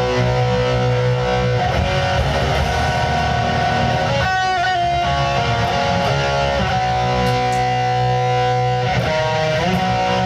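Electric guitar playing neo-classical metal: long held lead notes over a steady low chord, with a note bent about four seconds in and quicker note changes near the end.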